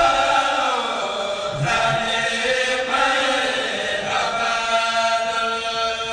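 A kourel, a Senegalese Mouride choir, chanting a khassida in unison with voices only, in long held lines that change pitch every second or so.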